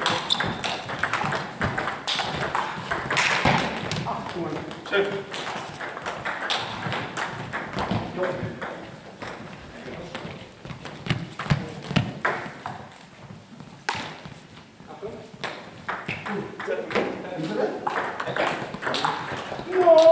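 Table tennis ball clicking off the bats and the table in quick rallies, with a lull in the middle and play picking up again near the end. Indistinct voices are heard in the background.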